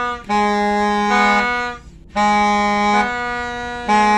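Toy New Year's trumpets (terompet) blown in long held blasts that switch between two pitches, with a short break about two seconds in.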